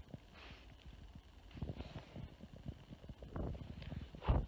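Low wind rumble and handling thumps on a phone microphone, with two breathy exhalations of cigarette smoke, about half a second in and again near two seconds.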